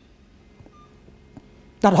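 A pause in a man's sermon: low room tone with a faint short beep-like tone about a second in, then the man starts speaking again near the end.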